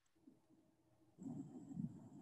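Near silence, then about a second in the sound of an outdoor phone video starts playing: low rumbling noise with a faint, steady, high insect-like whine above it.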